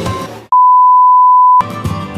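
Background music drops out, then a single loud, steady, high electronic beep tone lasts about a second before the music comes back in.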